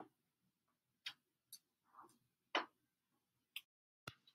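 Near silence broken by a handful of faint, short clicks at irregular intervals.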